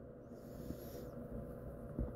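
Quiet room noise with a faint steady hum and a low rumble, with a brief soft hiss in the first second.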